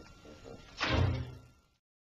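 A single sudden thud about three-quarters of a second in, with a short low ring after it, then the soundtrack cuts off to dead silence.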